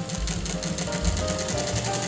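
Industrial flatbed sewing machine stitching through a sandal strap, its needle running in a rapid, even rhythm, with background music over it.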